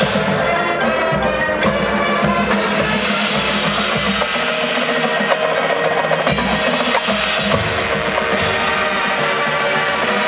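Marching band playing its field show: sustained wind chords layered with the front ensemble's ringing mallet percussion and drums, loud and steady throughout.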